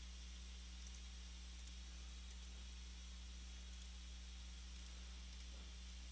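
Quiet room tone: a steady low electrical hum and faint hiss, with a few faint, scattered clicks.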